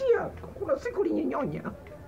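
A man's voice, drawn out and sliding in pitch, falling over about a second and a half before trailing off.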